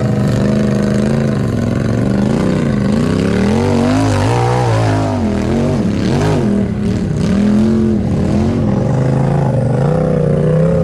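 Off-road side-by-side engine revving up and down in repeated throttle blips as it works over rock ledges, climbing to its highest revs about four seconds in. A few short knocks come around six to seven seconds in.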